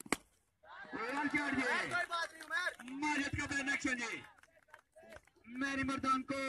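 A single sharp crack of a cricket bat striking a taped tennis ball just after the start, followed by men's voices calling out over the play.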